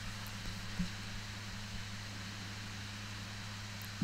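Steady background hum and hiss of the recording, a low even drone with nothing else happening.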